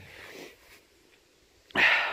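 Mostly quiet, with a faint breathy hiss at first and a sharp, loud breath near the end.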